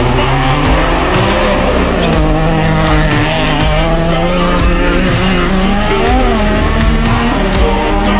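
Ford Puma Rally1 rally car driving past at speed through a bend, its engine note rising and falling as it is revved, with music playing underneath.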